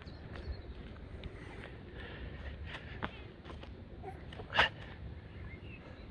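Thuds and scuffs of a person doing a burpee with a push-up while wearing a 10 kg weight vest: hands and feet landing and jumping on a mat over concrete. There is one louder burst about four and a half seconds in.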